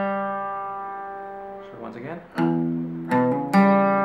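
Fender CD60E steel-string acoustic guitar: a single open third-string note rings and fades for about two seconds. After a short pause the riff starts again, with a low open-string note, a quick hammered-on pair and the open third string ringing out near the end.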